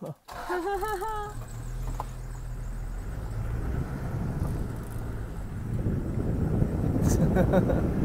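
A vehicle engine runs with a steady low hum, and then the vehicle moves off along a dirt road, with rough road and wind noise building toward the end. A brief wavering voice sounds about a second in.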